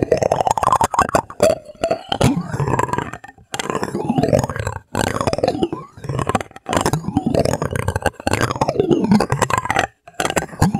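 White plastic spoon rubbed, scraped and tapped on a mesh microphone grille, very close up. It makes an irregular run of rubbing strokes and small clicks with gliding pitch, pausing briefly about three and a half, five and six and a half seconds in.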